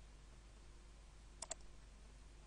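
A computer mouse button clicking once, two sharp ticks close together about one and a half seconds in, closing a program window; otherwise near silence.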